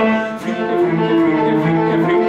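Cello and grand piano playing a fast tarantella accompaniment, with sustained bowed cello notes over the piano and a brief dip in level about half a second in.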